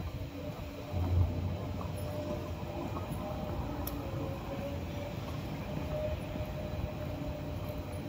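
Steady low rumble of a running vehicle, with a faint wavering hum above it and a brief swell about a second in.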